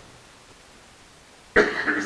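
A pause with only faint room hiss, then, about a second and a half in, a man's short cough that runs straight into his speech.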